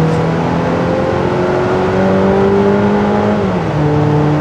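Jeep Renegade's 2.4-litre naturally aspirated four-cylinder engine heard from inside the cabin while accelerating. Its drone rises steadily in pitch, then drops about three and a half seconds in as the automatic gearbox shifts up.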